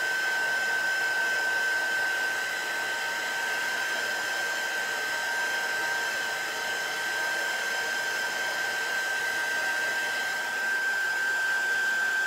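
Handheld craft heat tool blowing steadily, a constant high whine over the rush of air, drying freshly applied chalk paste.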